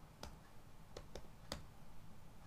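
Computer keyboard keys clicking as code is typed: four faint, irregularly spaced keystrokes, the loudest about a second and a half in.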